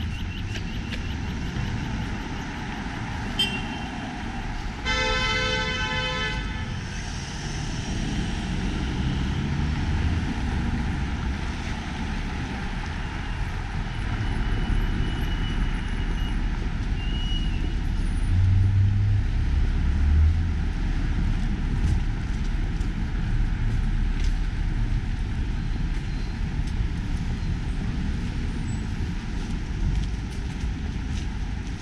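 Busy city street traffic: cars driving past at an intersection. A vehicle horn honks once, for about a second and a half, about five seconds in. Around two-thirds of the way through a vehicle passes closer with a louder low engine rumble.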